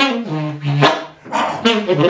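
Solo saxophone improvising: short, clipped notes that drop down into the horn's low register, a brief pause, then a new phrase starting.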